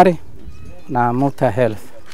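Livestock bleating: two drawn-out calls about a second apart, each steady in pitch and then wavering at the end.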